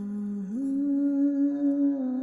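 Wordless vocal humming on long held notes; the pitch steps up about half a second in and then holds steady.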